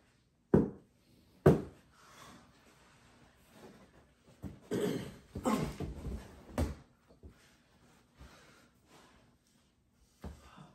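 Two sharp thumps near the start from people wrestling on a carpeted floor, then a few seconds of scuffling and bumping bodies, with a last thump about six and a half seconds in.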